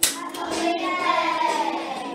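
A class of young children singing a song over music, with one voice gliding downward in the second half. A sharp hit sounds right at the start.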